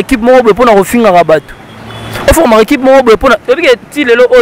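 Speech: a man talking into a microphone, with a short pause about a second and a half in.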